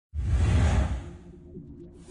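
A whoosh sound effect with a deep rumbling low end swells in at the very start and fades out within about a second, leaving low, pulsing background music.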